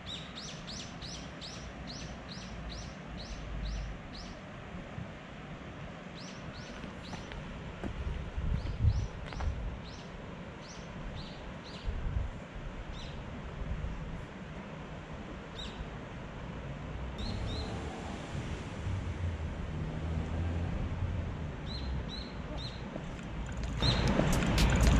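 A small bird calling in runs of quick, high chirps, about three a second, pausing between series, over a steady low background rumble.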